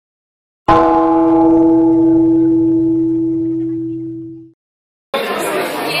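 A single struck gong-like metal tone about a second in, ringing on one steady pitch and dying away until it stops at about four and a half seconds. Shortly after five seconds the murmur of voices in a large hall begins.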